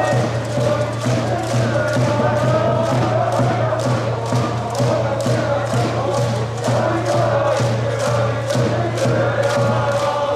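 A cheering section in the stands chanting in unison over a steady beat of about two strokes a second, the organised rooting of a school baseball game.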